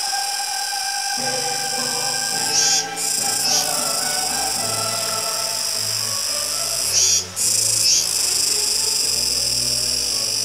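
Kuroiwa tsukutsuku cicada (Meimuna kuroiwae) singing: a loud, continuous high-pitched buzz that briefly swells and breaks off twice, about three and seven seconds in.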